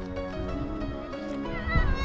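Background music with steady, held tones. Near the end a brief high, wavering sound rises over it.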